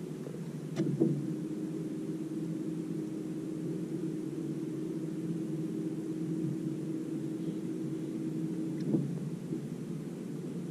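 Steady low hum of a bass boat's electric trolling motor, with a sharp knock on the boat about a second in and another near the end.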